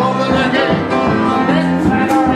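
Boogie-woogie piano played live.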